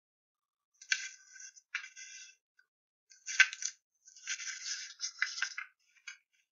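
Cut paper pieces being handled and slid over a cardboard board, in several short rustling bursts, the loudest about three and a half seconds in.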